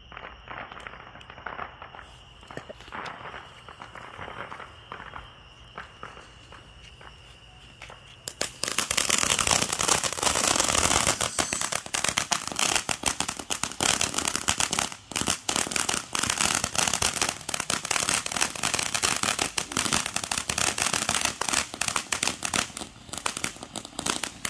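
Ground fountain firework spraying sparks with a dense, continuous crackle that starts suddenly about eight and a half seconds in and keeps going, loud and steady. Before it catches there are only faint scattered clicks over a steady high insect chirr.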